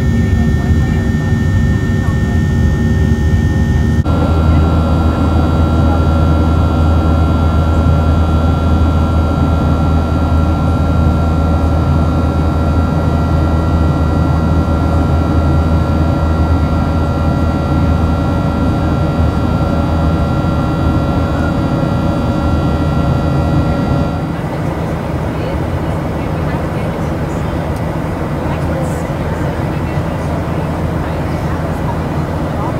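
Boeing 737-700's CFM56-7B turbofan engines running at climb power, heard inside the cabin by the wing: a steady rumble with several steady whining tones. The tones shift abruptly about four seconds in, and after about 24 seconds they give way to a quieter, even cabin hum.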